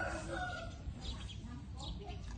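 A drawn-out animal call, steady in pitch, that ends a little under a second in, followed by fainter scattered sounds.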